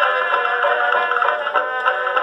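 Edison Diamond Disc record of a 1922 dance band playing a fox trot, reproduced acoustically on an Edison C-200 phonograph. It has the thin sound of an early acoustic recording, with no deep bass and little above the midrange.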